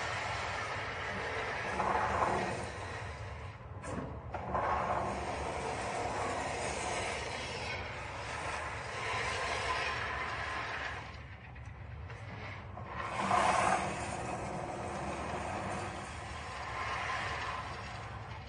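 Continuous mechanical rattling and rumbling from a projected video played through the room's speakers, swelling louder several times. It is the sound of head-shaped targets travelling on trolleys along overhead rails.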